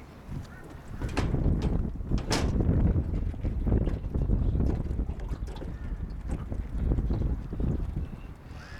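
Wind buffeting the microphone: an uneven low rumble that grows stronger about a second in, with a few sharp clicks, the loudest about two and a half seconds in.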